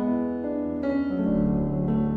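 Electronic keyboard with a piano sound playing broken chords as arpeggios, the notes entering one after another. A deeper bass note comes in a little past halfway.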